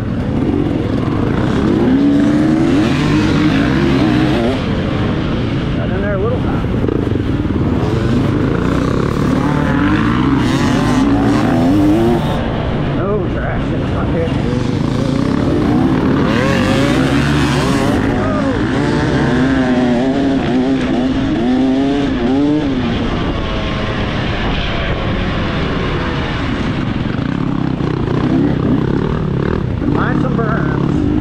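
Off-road dirt bike engine under hard acceleration, its pitch climbing and dropping back again and again as the rider shifts through the gears, with other bikes' engines running close by.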